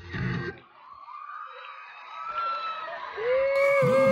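Dance music cuts off about half a second in, leaving faint crowd noise with a few distant cries. Near the end, a loud, high, held tone with a slight waver starts.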